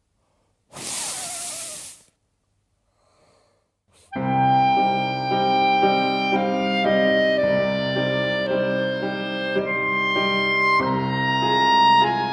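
A single hard blow of air lasting about a second, then a clarinet playing a slow melody over piano accompaniment, the notes changing about every half second.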